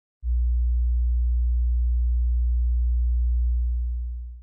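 A steady, very deep electronic tone, like a pure sine wave, starting a moment in and beginning to fade near the end.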